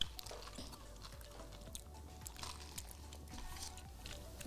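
Faint chewing and sipping of boba milk tea, tapioca pearls drawn up through a wide straw and chewed, with small scattered clicks over quiet background music.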